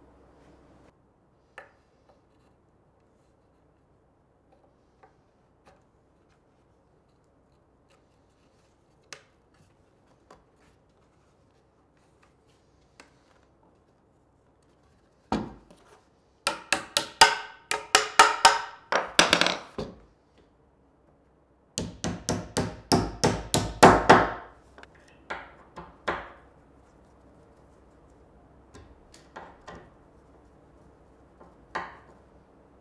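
Hand hammer tapping on a wooden workpiece: two quick runs of sharp strikes of a few seconds each, starting about halfway in, with a few single knocks before and after and near silence in between.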